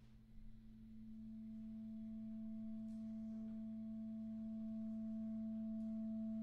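Clarinet holding one long, soft low note that swells slowly out of silence. The tone is steady and nearly pure, with a faint overtone joining about a second in.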